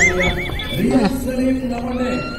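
A high, quavering, whinny-like call that warbles up and down and fades about half a second in, followed by a short sliding sound and a steady low tone.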